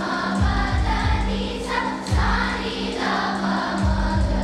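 Children's choir singing together over a musical accompaniment with a held low note and a steady low beat.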